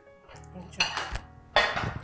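Ceramic plates and cutlery clinking and clattering as dishes are picked up from a dining table, three sharp knocks in the second half, over soft background music.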